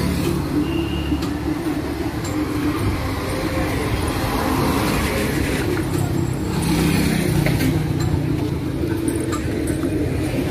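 Road traffic: motor vehicle engines running and passing, a steady low hum that swells twice.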